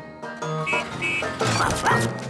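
Cartoon ladybird giving dog-like barks and yips over light background music.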